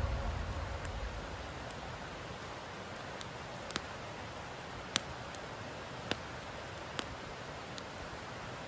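Wood campfire burning quietly: a soft steady hiss with a handful of sharp crackling pops in the second half, the loudest about five seconds in. The tail of music fades out at the start.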